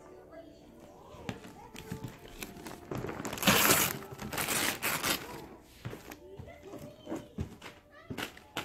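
Gift wrapping paper being torn off a large box by hand, with two loud rips about three and a half and four and a half seconds in and smaller rustles and tears around them.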